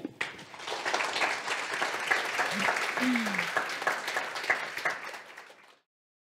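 Audience applauding at the end of a talk, a dense patter of many hands clapping that cuts off abruptly shortly before the end.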